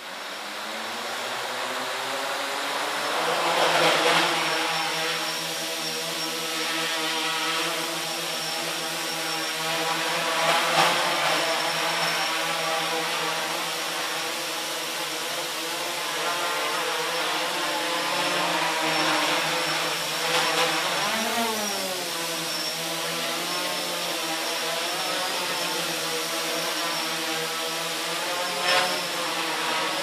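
Homemade quadcopter's four electric motors and propellers spinning up from rest and then running steadily as it hovers, a many-toned buzz. The pitch wavers as the motor speeds are adjusted, with a marked dip and rise a little past two-thirds of the way through.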